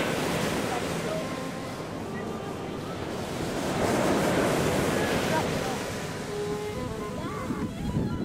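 Sea surf washing onto a sandy beach, with wind buffeting the microphone. The wash grows louder about four seconds in.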